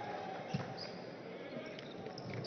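A volleyball struck once, a sharp smack about half a second in, as the serve is passed, over the steady noise of an indoor arena crowd.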